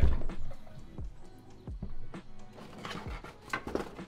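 Background music with a steady beat. At the start there is a thud as the Onewheel Pint electric board is set down upside down on the desk.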